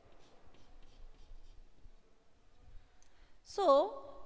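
Chalk on a blackboard: faint scratching and light ticks as a small circle is drawn and shaded in, followed near the end by a single spoken word.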